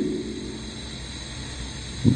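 A pause in a man's speech at a microphone, holding only a steady background hum and hiss from the room and recording.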